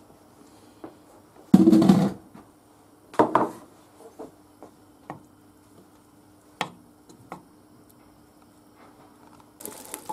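Wooden spoon scraping and knocking against a non-stick frying pan while lumps of butter are pushed around to melt: one loud scrape about a second and a half in, a shorter one a couple of seconds later, then a few light taps. Near the end the melted butter starts to sizzle.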